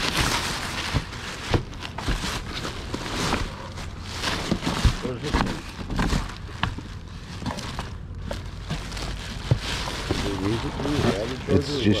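Black plastic trash bag rustling and crinkling continuously as hands pull it open and rummage through the clothes inside it.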